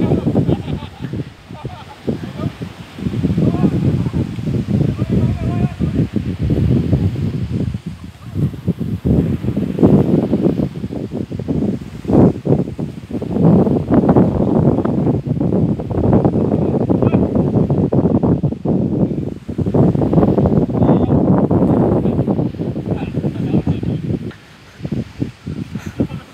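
Wind rumbling on the phone's microphone in gusts, loud and low, rising and dropping every few seconds with brief lulls.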